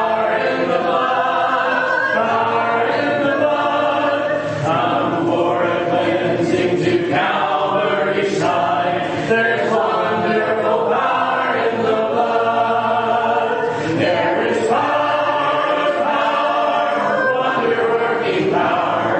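Church congregation singing a hymn together a cappella, many voices without instruments, led by a song leader beating time.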